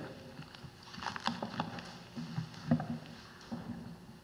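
Faint scattered knocks and rustles of people moving at a lectern, picked up by its microphone.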